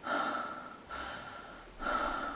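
A man breathing audibly through his mouth, three breaths in a row. He is demonstrating how he habitually mouth-breathed even with an unblocked nose.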